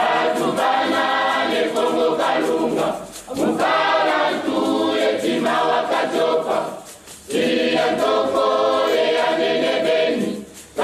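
A choir singing a Kongo hymn in Kikongo, apparently unaccompanied, in three long phrases with short breaths between them.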